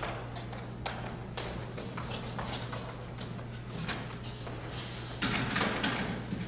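Irregular knocks and thuds of a small table being set down and a wheeled chair rolled into place on a stage, with a louder clatter of under a second near the end. A steady low hum runs underneath.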